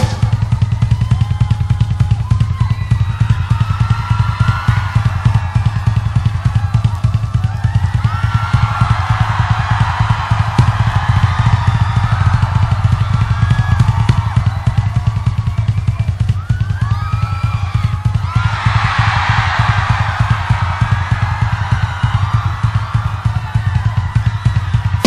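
Rock drum solo on a full drum kit: a rapid, unbroken bass-drum pattern runs throughout. Above it the audience shouts and cheers, swelling about three-quarters of the way through.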